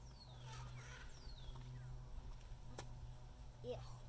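Faint bird calls: two falling whistled notes in the first second and a half, then a single sharp click a little under three seconds in.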